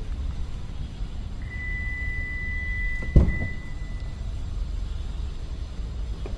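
A car door being opened: one sharp thunk of the latch about halfway through, over a steady high electronic beep that lasts about three seconds, with a low rumble underneath.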